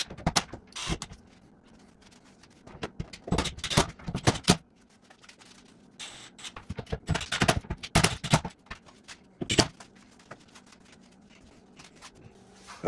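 Cordless drill driving screws into the wooden table in several short bursts with pauses between them, fastening the CNC's Y-rail mounts down.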